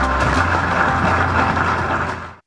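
A crowd applauding, a dense even clatter of clapping, under the fading end of background music.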